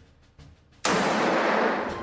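A single sudden blast of gunfire, a battle sound effect, starting about a second in and dying away over about a second.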